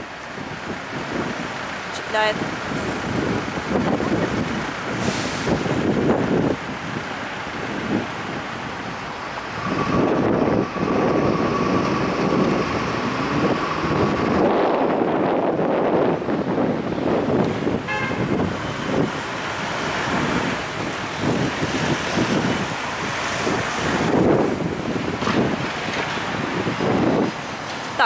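City street traffic going by, with a steady tone held for a few seconds about ten seconds in.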